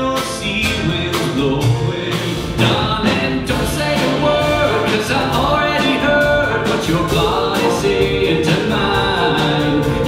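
Live country music: a band with drums backing a singer. It cuts abruptly to a different song about two and a half seconds in.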